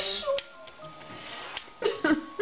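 Soft acoustic background music over a clip's noisy room sound, with a few light taps and, near the end, a short animal cry that bends in pitch.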